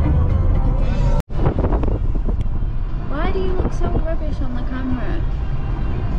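Low road rumble inside a moving car, with music playing, cuts off abruptly just over a second in. Then music with a voice, its pitch gliding and holding notes.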